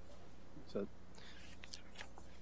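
A pause in speech: meeting-room tone with a steady low hum, one soft spoken word about two-thirds of a second in, and a few faint soft noises after it.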